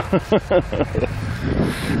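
A person's voice in a quick run of about five short bursts, each falling in pitch, like laughter, over a steady low rumble.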